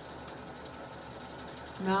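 Sewing machine running steadily at a moderate speed, a low, even mechanical hum.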